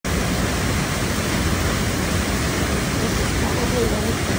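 Sol Duc Falls, a waterfall pouring through a rocky gorge in several channels: a steady, loud rush of falling water.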